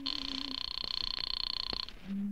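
A steady electric buzzer sounds for nearly two seconds, starting and cutting off sharply. A low held note fades out under it about half a second in.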